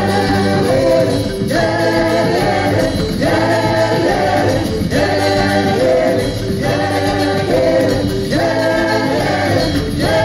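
Live band music with several voices singing together. A short sung phrase repeats about every second and a half over a steady bass.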